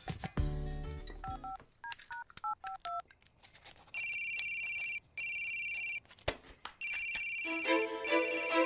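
Short keypad beeps as a number is dialled on a mobile phone, then a mobile phone ringing in three trilling bursts. Background music comes in near the end.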